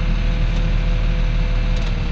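Tractor engine running steadily, heard inside the cab, while the hydraulics raise and turn over a mounted reversible plough at the headland. A thin steady whine runs over the engine and stops shortly before the end.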